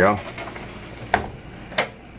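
Two short, sharp clicks, a little over half a second apart, from a wooden sliding bathroom door and its latch being worked and the door slid across.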